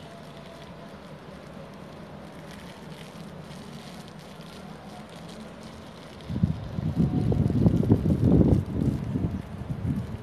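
Wind on the microphone: a steady low rumble, then from about six seconds in, loud, rough gusts buffeting the mic.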